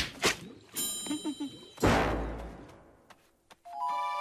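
Cartoon sound effects: two sharp hits at the start, a ringing ding, then a heavy thud about two seconds in whose low rumble dies away. A sustained tone begins just before the end.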